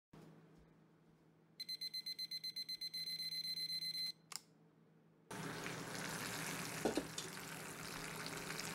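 Polder cooking thermometer's temperature alert beeping rapidly, high and shrill, quickening to a near-continuous trill: the probe has reached the 165°F target and the chicken is done. It cuts off abruptly when the alert button is pressed, with one short chirp after. Then, a little after the middle, a steady sizzling hiss from the roasted chicken in the cast iron Dutch oven begins.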